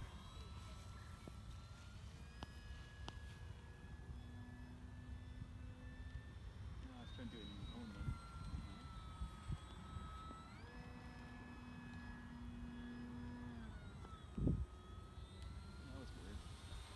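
E-flite PT-17 radio-controlled biplane flying overhead, its electric motor and propeller giving a thin whine that steps up in pitch with throttle about two seconds in and again about ten seconds in, and drops back about seven and fourteen seconds in. Low wind rumble on the microphone lies underneath, with a brief low thump near the end.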